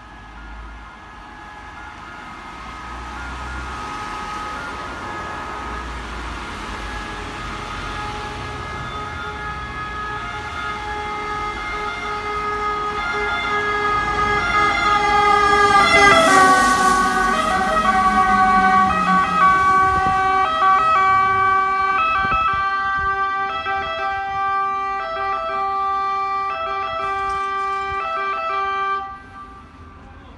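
Fire engine's two-tone siren drawing near and growing louder. About halfway through it drops in pitch as the truck passes, then keeps alternating between its two notes until it cuts off suddenly near the end.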